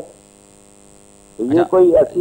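Steady low electrical mains hum on the broadcast audio line, heard in a pause of about a second and a half between voices, before a man starts speaking again near the end.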